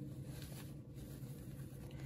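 Faint, soft rustling of cotton fabric and interfacing being handled as an appliqué piece is turned right side out, over a steady low hum.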